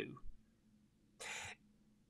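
A man's short breath in, a brief airy hiss lasting about a third of a second, a little over a second in, in a pause in his speech.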